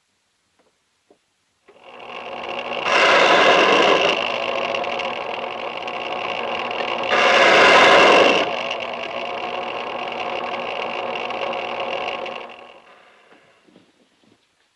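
Electric key-cutting machine running, with two louder stretches of about a second each as it cuts the key, then winding down near the end.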